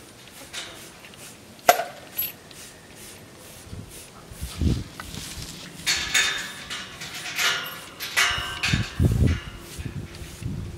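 Rubber curry comb scrubbing a miniature horse's coat in short, irregular strokes. There is a single sharp click just under two seconds in and a few dull thumps toward the end.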